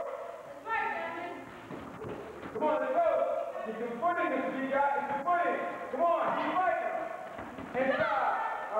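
Raised voices of onlookers shouting and cheering during a sparring bout, high-pitched and unintelligible, with a few thumps of blows or feet on the mat.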